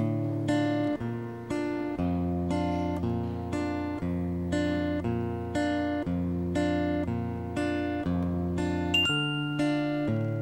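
Instrumental live-looped music: acoustic guitar chords strummed about twice a second over a sustained bass line that steps between notes. About nine seconds in, a glockenspiel note struck with a mallet rings in high above the chords.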